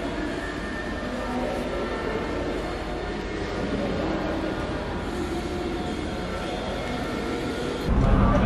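Slow music of long held notes that change every second or two. Just before the end it cuts abruptly to a louder low rumble of a bus.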